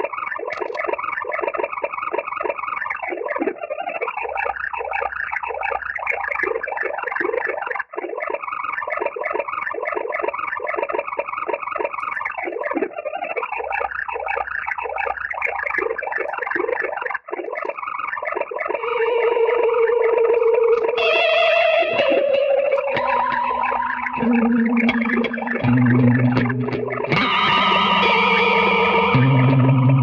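Electric guitar heavily processed through effects pedals. For the first two-thirds it is a fast, flickering stream of short arpeggiated fragments from a looped Arpanoid pattern, sped up and reversed by the Count to Five and fed into the Electro-Harmonix 16-Second Digital Delay. After that it gives way to long held notes that step from pitch to pitch.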